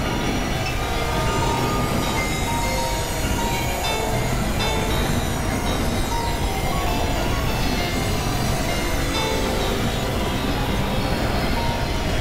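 Experimental electronic noise music from synthesizers: a dense, rumbling wash of noise with short held tones popping up at scattered pitches and a few faint high gliding tones about midway.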